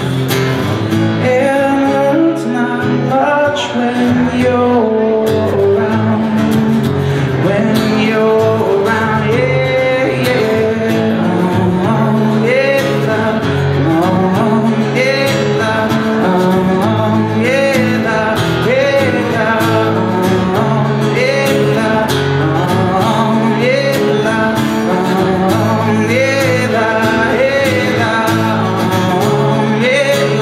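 Live solo acoustic performance: an acoustic guitar strummed steadily while a man sings drawn-out, wordless vocal lines into a microphone.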